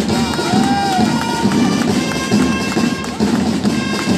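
Flag-throwing display music: drums beating with several long, steady held wind or brass tones over them, and a short rising-and-falling call about half a second in.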